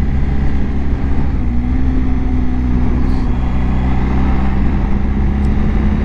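BMW R1250 GS boxer-twin engine cruising steadily at about 35 mph, heard from the rider's seat, with a steady engine hum under heavy wind and road rumble on the microphone.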